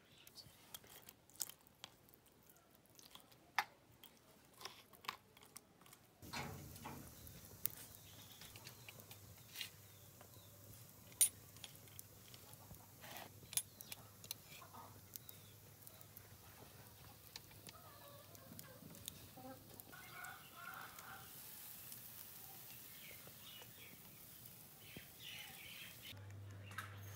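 Faint, scattered clicks and taps of food being handled: a spoon spreading marinade on a fish on a wooden board, then a wire grill basket over charcoal. From about six seconds in a low steady hum runs under the clicks.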